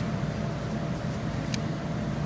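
Steady low background rumble with a faint hum, broken by a couple of soft clicks of baseball cards being handled.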